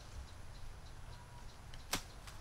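A long bamboo pole dropped onto grassy ground, landing with a single sharp clack near the end.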